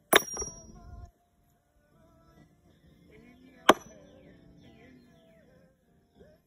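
Two thrown metal washers landing at the wooden washer-toss box, each a sharp clack with a brief metallic ring, the first right at the start and the second under four seconds later. Music plays faintly behind.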